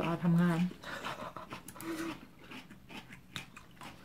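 A few spoken words, then quiet eating: chewing and light clicks of a metal fork against a plate, the sharpest click about three seconds in. A brief short hum or whine is heard near the middle.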